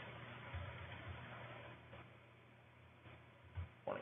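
Quiet background hiss with a few faint soft clicks from typing on a laptop keyboard.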